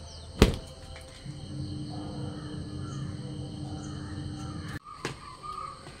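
A wet garment shaken out with one sharp snap about half a second in, over a steady low hum. The hum cuts off abruptly near the end, and a fainter click follows.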